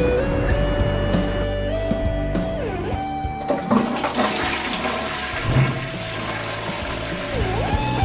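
Background music with held notes, and from about three and a half seconds in a toilet flushing over it, its rush of water lasting about four seconds.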